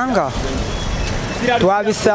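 Street traffic, a minibus taxi passing close by: an even engine-and-tyre noise lasting about a second between a man's words.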